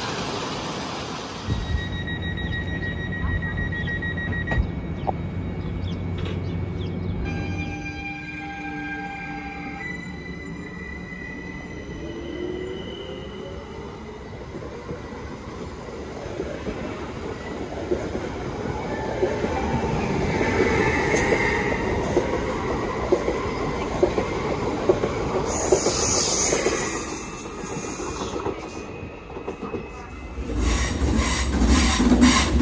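A BLS Stadler MIKA (RABe 528) electric multiple unit moving off from a station, after about a second of rushing-water noise. Steady electrical tones from its traction equipment step through several pitches, then a rising whine. Rail and wheel noise grows louder and falls away near the end.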